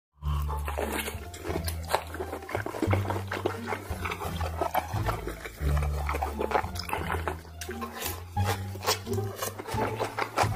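Close-up chewing and wet mouth sounds of someone eating a big bite of boiled pork belly with kimchi, many short smacks and clicks, over background music with a low bass line that changes note about once a second.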